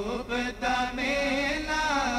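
Men's voices singing a Punjabi naat together through microphones, a slow, ornamented melodic line with a brief break about half a second in. A low steady hum lies underneath.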